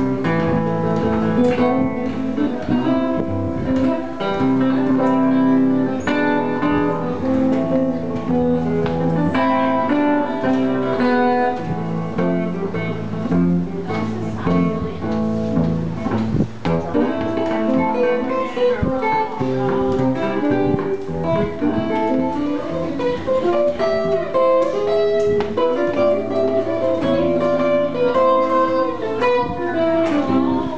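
Gibson ES-335 semi-hollow electric guitar played solo through an amplifier: a jazz instrumental arrangement of a patriotic medley, with several notes sounding together, chords and melody, without a pause.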